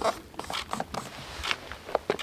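Hands rubbing against and handling a polystyrene foam box, a run of irregular short scrapes and rustles.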